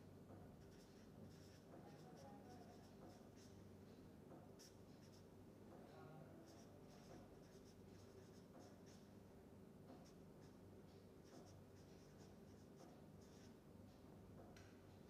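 Faint marker-pen strokes scratching on paper as an equation is written, one short stroke after another, over a faint steady low hum.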